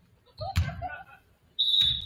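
A referee's whistle blows one short, shrill blast about a second and a half in, stopping play. Earlier there is a thud with a brief shout from the court.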